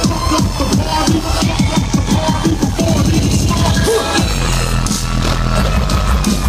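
Loud live dubstep over a club sound system, with a fast stuttering beat that gives way to a heavy sustained bass about four seconds in.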